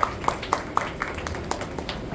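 Hands clapping in a steady, even rhythm, about four claps a second.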